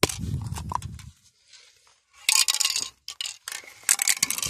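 Aerosol spray paint can being handled, with knocks and clinks in the first second, then short hissing sprays: one about halfway through and a few shorter ones near the end.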